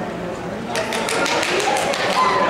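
Quick run of sharp taps, about eight a second, starting a little under a second in: a dog's paws striking the plank of an agility dog walk as it runs up onto it. Voices talk in the background.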